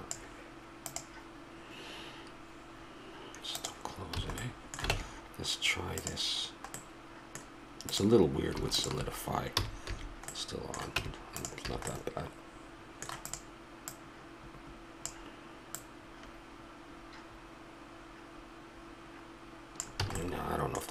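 Computer keyboard keystrokes and mouse clicks, scattered and irregular, over a steady low hum. A brief low vocal sound stands out about eight seconds in.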